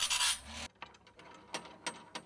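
A short grinding hiss that stops abruptly after about half a second. It is followed by a series of light metallic clicks and taps from a hand-operated band saw blade tooth setter.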